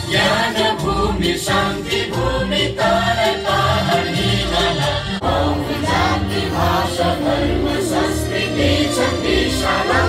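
A song sung by a group of voices over music with a steady beat and bass, with the standing crowd singing along.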